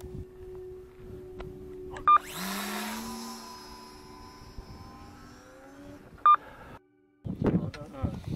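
Electric motor of an F5B RC glider spinning up with a rising whine and a rush of air after a short beep, then running on and fading. A second short beep comes about six seconds in, and the sound cuts off shortly after, before a voice near the end.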